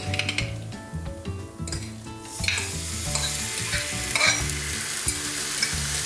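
Chopped eggplant scraped into a hot pan of butter-and-flour roux. From about two and a half seconds in, it sizzles steadily in the pan.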